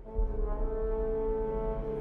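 Background music: a sustained brass chord, dipping briefly at the start before a new held chord comes in.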